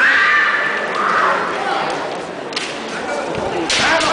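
Kendo fencers' kiai: a long, high, drawn-out shout at the start and a shorter one about a second in. Sharp impacts follow near the end, from shinai strikes or foot stamps on the wooden floor.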